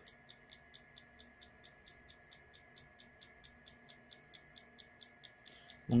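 A bench-mounted automotive fuel injector's solenoid clicking in an even rhythm of about five clicks a second as the engine computer pulses it.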